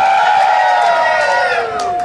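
Audience cheering and whooping, several voices held high at once and slowly falling in pitch, with a few claps among them.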